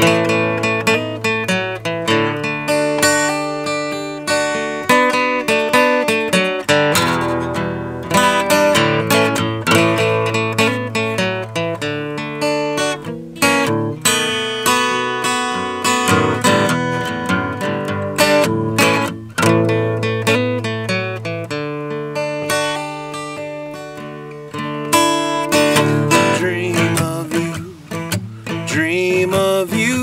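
Solo acoustic guitar playing an instrumental break in a country-blues song, a quick run of picked notes and chords; the singing voice comes back in right at the end.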